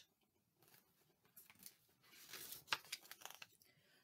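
Faint rustle of a picture book's paper page being turned, with a small sharp click in the middle of it, in the second half of an otherwise near-silent stretch.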